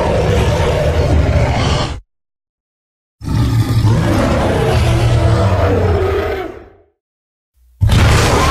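Deep Tyrannosaurus rex roar sound effects: one roar of about two seconds, a pause, then a longer roar of about three and a half seconds that fades away. A third roar begins at the very end.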